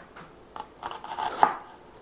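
Kitchen knife slicing an onion on a cutting board: several separate cuts, the loudest about a second and a half in.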